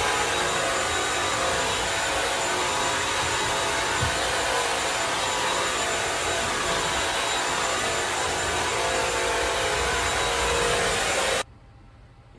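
Bissell CrossWave wet-dry vacuum running steadily while vacuuming and washing a vinyl floor at the same time, a loud even motor and suction noise with a faint high whine. It cuts off suddenly near the end.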